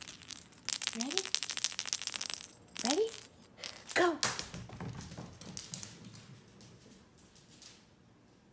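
A small cat toy jingling and rattling rapidly for about two seconds, then more lightly in scattered bursts, with three short rising voice sounds in between.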